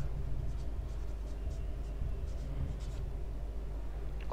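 Marker pen writing on a whiteboard: a series of short, faint strokes over a low steady hum.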